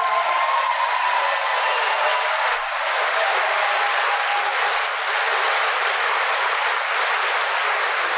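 Audience applauding steadily, welcoming a speaker just introduced.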